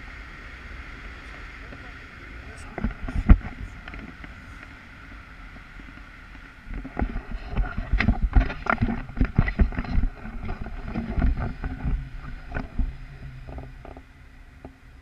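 Wind rushing over the microphone of a camera carried on a tandem paraglider, with two sharp knocks about three seconds in. From about seven seconds on there is a run of irregular thumps and rustles as the feet and harness come down near the snow.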